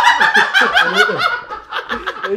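Two men laughing in quick repeated bursts, loudest at the start and tailing off.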